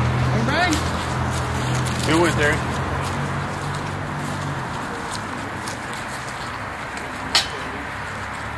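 Street traffic hum that fades out about halfway, with a couple of short voices calling out in the first few seconds and one sharp click near the end.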